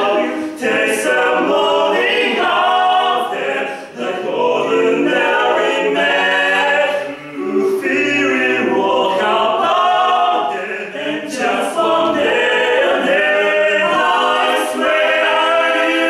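Male a cappella quartet singing in close harmony, with several voices sustaining chords and moving between notes, briefly dipping in level twice.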